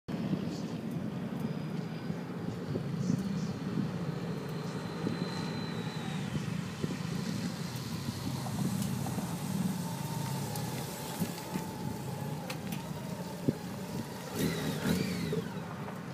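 Honda Gold Wing motorcycle engine running steadily at low speed as it rides through a cone course and passes close by.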